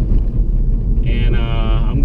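Steady low drone of a Honda Civic Si cruising, heard from inside the cabin, with road and wind noise. About halfway through, a man's voice comes in with a long, held 'uhh'.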